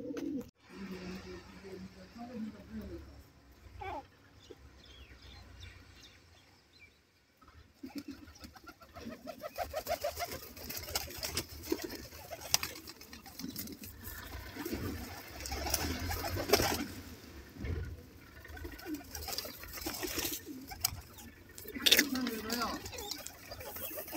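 A flock of domestic pigeons cooing over and over while feeding, with scattered sharp clicks among them. The first several seconds are quieter, and the cooing gets busier from about eight seconds in.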